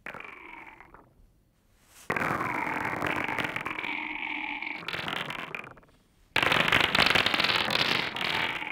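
Synthesized electronic sound from the loudspeakers, triggered by shaking a small handheld digital music controller: a brief faint sound, then two long stretches of dense crackling noise, starting about two and six seconds in, the second louder.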